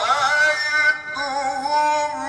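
A man's voice in melodic Qur'an recitation (tajwid), drawing out long held notes with sliding, ornamented pitch, with a short break for breath about a second in.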